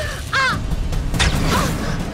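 A young woman screaming in pain in several harsh, wavering cries.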